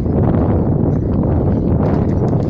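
Wind buffeting the microphone: a loud, steady low rumble, with a few faint clicks.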